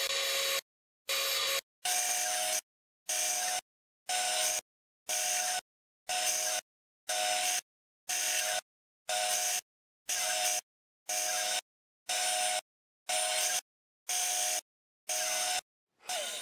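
Bandsaw running and cutting walnut, heard in short snatches of about half a second, roughly one a second, with dead silence between them.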